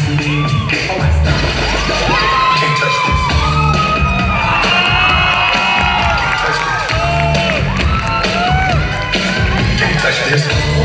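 Loud dance music playing over a PA system, with an audience cheering, shrieking and whooping over it.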